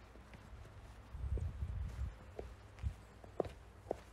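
Footsteps on packed snow, about two steps a second in the second half. Before them comes a louder low rumble lasting about a second.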